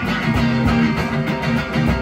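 Live music: plucked strings playing sustained notes over regular low drum beats.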